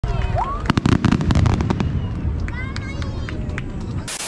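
Aerial fireworks shells bursting, with a low booming rumble and a dense crackle of many sharp pops that is strongest in the first two seconds and then eases off.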